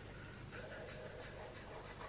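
Zebra Mildliner highlighter drawn across paper in wavy strokes: a faint scratch of the felt tip, several quick strokes.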